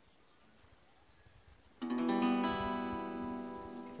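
An E minor chord strummed once on a hollow-body archtop guitar a little under two seconds in, left to ring and slowly fade.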